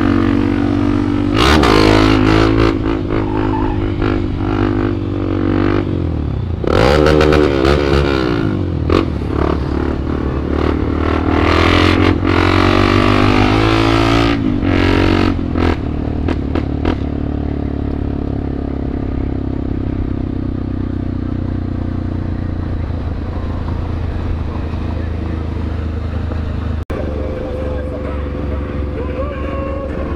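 Honda XRE 300 single-cylinder motorcycle engine running under way, revving up and easing off several times in the first half, then settling to a steadier run. Bursts of wind noise on the microphone come with the harder acceleration.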